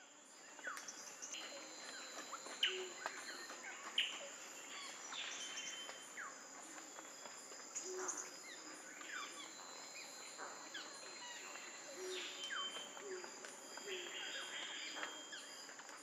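Many birds calling with short chirps and quick falling whistles over a steady high insect drone.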